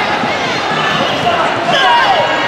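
Bare feet thudding and stamping on a wooden hall floor as two children spar in a karate bout, under steady chatter of many voices in a large hall.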